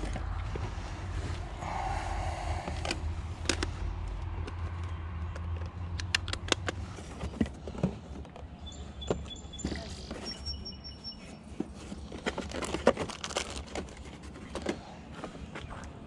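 Light clicks and knocks of objects being handled and set about, with a low rumble during roughly the first seven seconds and a few brief high steady tones around the middle.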